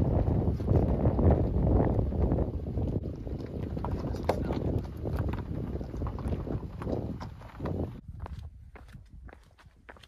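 Footsteps crunching on gravel and rock along a desert trail, under a heavy low rumble on the microphone. The rumble drops away about eight seconds in, leaving sharper, separate crunching steps.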